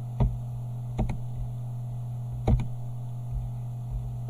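About five sharp computer clicks, one near the start, then a pair about a second in and another pair about two and a half seconds in, over a steady low electrical hum.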